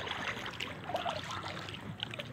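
Water trickling and dripping with small splashes around a kayak being paddled slowly on a calm river.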